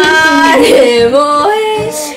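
A voice singing a melody on nonsense syllables like 'lo-li', holding notes that step up and down in pitch: a song snippet sung as a guess-the-song clue.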